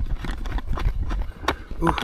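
Irregular light knocks and clicks over a steady low rumble, with a man's short "ooh" near the end.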